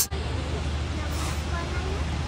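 Steady low hum of a Tobu Skytree Train electric railcar standing at the platform, with faint chatter from the crowd around it.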